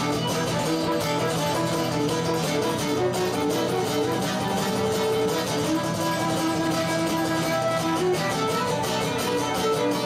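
Instrumental passage for fiddle and acoustic guitar: the fiddle, bowed, plays a moving melody over steadily strummed acoustic guitar.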